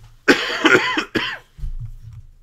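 A man coughing: one long cough starting about a quarter second in, then a second, shorter one just after.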